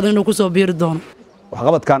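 Speech only: a woman talking, a short pause, then a man starting to talk.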